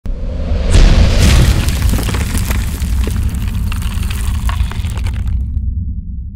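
Cinematic logo-intro sound effect: a deep boom about a second in, with cracking and shattering crackle over a low rumble. Near the end the crackle stops and the low rumble fades on.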